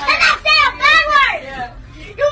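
A young girl shouting "Can I say a bad word!", her voice high and rising and falling in pitch.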